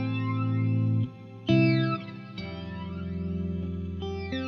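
Electric guitar chords played through a Line 6 HX Stomp's Dynamix Flanger with max delay at 10 ms, a milder setting. A slow flanging sweep rises and falls through the ringing chords. New chords are struck about a second and a half in and again about a second later.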